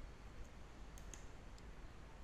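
A few faint computer mouse clicks, two of them close together about a second in, over a low steady hum.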